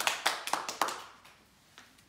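A small audience applauding with hand claps, the clapping dying away about a second and a half in.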